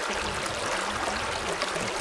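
Shallow mountain stream flowing over stones: a steady rush of running water.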